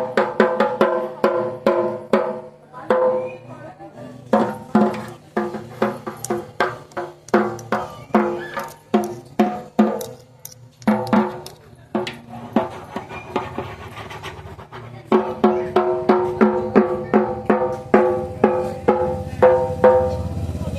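A dhak, the large Bengali barrel drum, beaten with two thin sticks by a small child: uneven strokes, each with a ringing tone, in quick runs at the start and again in the last few seconds, with sparser hits in between.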